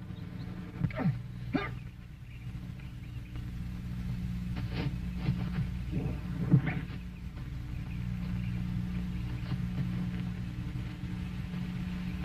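Short animal calls, scattered a few seconds apart, over a steady low hum.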